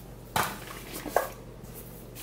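Groceries knocking together as they are unpacked from a tote bag: a dull knock about a third of a second in, then a sharper clink of metal food cans just after a second in.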